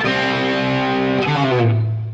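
Lightly overdriven Les Paul-style electric guitar playing a slow blues fill in D minor pentatonic: a held note, then a step down to a lower note about one and a half seconds in that rings on and begins to fade.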